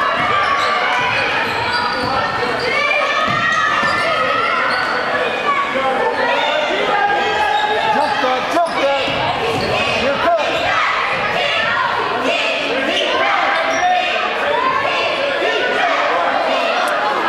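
A basketball bouncing on a hardwood gym floor during play, under a steady din of overlapping voices from players, benches and spectators in a large echoing gym. There are a couple of sharp knocks about halfway through.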